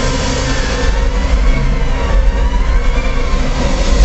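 Loud show soundtrack played over outdoor speakers, music and effects with a heavy low rumble underneath.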